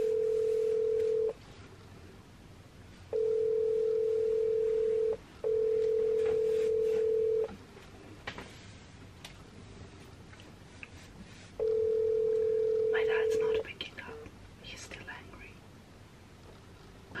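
Telephone ringback tone of an outgoing call ringing unanswered, heard through a phone on speaker: a steady low beep about two seconds long, sounding four times with uneven gaps.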